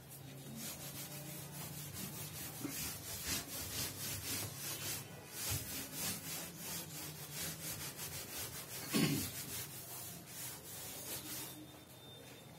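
A chalkboard being wiped with a blackboard duster: rapid back-and-forth rubbing strokes, several a second, stopping shortly before the end.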